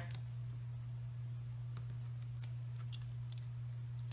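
A few faint, light clicks and ticks of paper handling as foam adhesive dimensionals are peeled from their sheet and pressed onto the back of a small cardstock circle, over a steady low hum.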